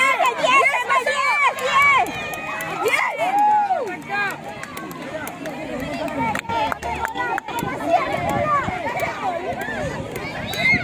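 A crowd of spectators shouting and cheering, with many high-pitched voices calling out over one another.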